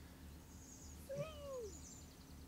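A toddler's short vocal squeal about a second in: it rises briefly, then slides down in pitch.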